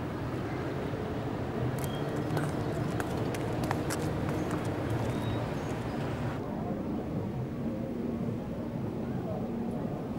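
Street ambience: a low steady rumble with faint indistinct voices, and a run of light clicks and taps from about two to four and a half seconds in, footsteps on paving stones.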